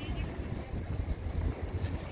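Wind buffeting a phone's microphone, an irregular low rumble, over the general noise of a town street.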